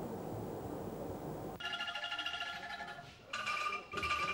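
An angklung ensemble, tuned bamboo rattles shaken in wooden frames, playing quiet chords with a fast shimmering tremolo. It comes in about one and a half seconds in after a faint hiss, and moves to a new chord a little past three seconds.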